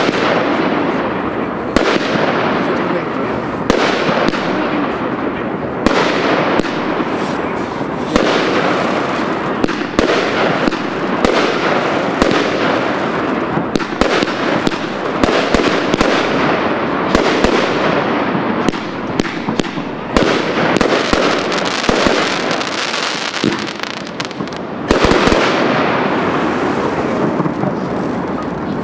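China Red 'Amazing Sky' 25-shot fireworks cake firing shot after shot, about one every two seconds. Each shot gives a sudden bang and then a dense crackle of small pops that fades before the next.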